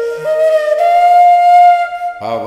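Bamboo transverse flute playing a slow phrase: a low held note, a step up, then a higher note held for about a second.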